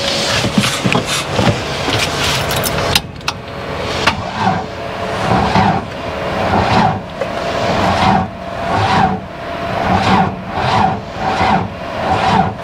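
Starter motor cranking a UAZ 'Bukhanka' van's engine, which does not catch: a first attempt of about three seconds, a short break, then a longer one in slow, labouring surges about once a second. The owners put the failure to start down to a run-down battery.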